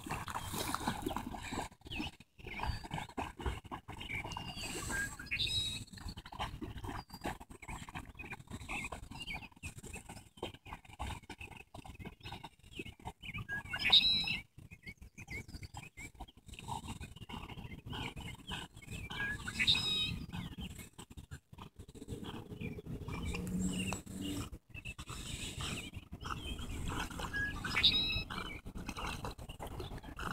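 Faint sounds of a dog swimming in a pond, with a few short, high calls, the loudest about halfway through.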